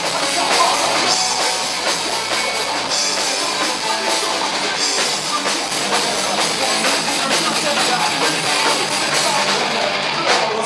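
Live punk rock band playing loud, with distorted electric guitars and a drum kit going steadily throughout.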